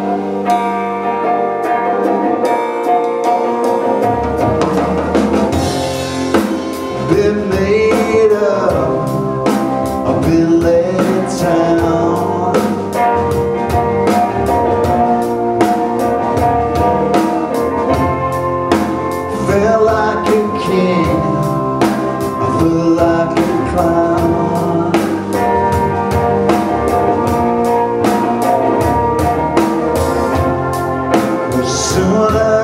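Live rock band playing a song. A keyboard plays alone at first; drum kit and bass guitar come in about four seconds in, joined by electric guitar and a man singing.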